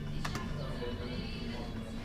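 Fruit machine's electronic music and tones playing steadily, with two sharp clicks about a quarter of a second in.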